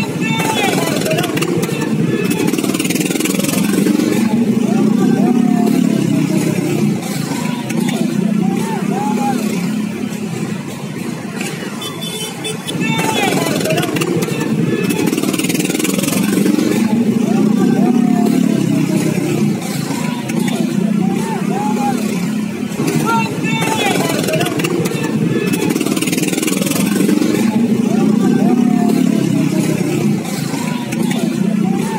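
Many motorcycles and scooters riding slowly past in a procession, their engines running together, with voices shouting over the traffic noise.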